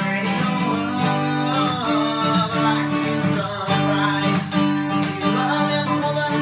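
Acoustic guitar strummed in a steady rhythm, chords ringing through an instrumental break between sung lines.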